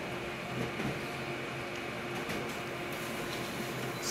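Office photocopier running a copy job: a steady mechanical running sound as the printed sheet feeds out into the output tray near the end.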